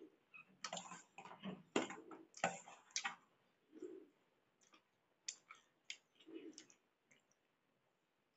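Close-up eating sounds: a steel spoon clicking and scraping against a stainless steel plate as pasta is scooped up, along with chewing and mouth clicks. The clicks and scrapes come thick for the first three seconds, then turn into sparser taps.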